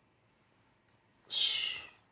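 Near silence, then a little over a second in a short breathy hiss from a man at a close microphone.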